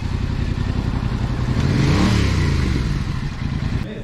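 Motorcycle engine running, its pitch rising and then falling once about halfway through, where it is loudest; the sound cuts off suddenly just before the end.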